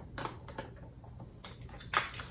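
Faint clicks and taps of hands handling perfume packaging, with one sharper click near the end.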